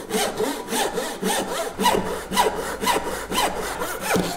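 Hand saw crosscutting an oak board to length, with steady back-and-forth strokes at about three a second.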